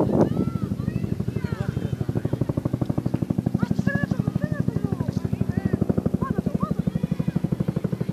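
Bell UH-1H Huey helicopter passing overhead: the steady beat of its two-blade main rotor, about ten pulses a second, growing louder towards the middle.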